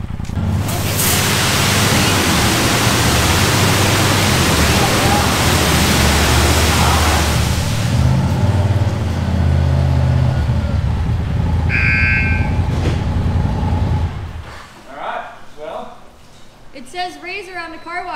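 Touchless automatic car wash running: a loud steady hiss of high-pressure water spray over a low motor drone. The hiss stops about eight seconds in and the drone about fourteen seconds in, with a short electronic beep near twelve seconds.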